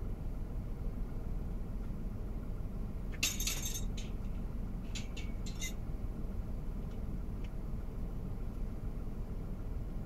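Car engine idling steadily, heard from inside the cabin. About three seconds in comes a short jangling clink, and a few sharp clicks follow around five seconds.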